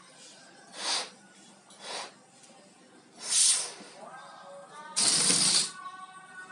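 A child blowing up a latex balloon by mouth: three breathy puffs of air about a second apart, then a louder, longer rush of air near the end.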